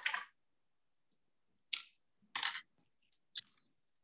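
A few short clicks and scrapes from handling a jar of store-bought kimchi and working its screw lid.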